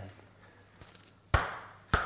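A small thrown game piece strikes the tabletop with a sharp, ringing clink about a second and a third in, followed by a lighter second hit just before the end, as if it bounces.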